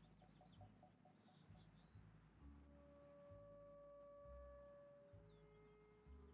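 Faint background film score: soft sustained notes fade in about two and a half seconds in, and a lower note joins near the end, with a few faint bird chirps above.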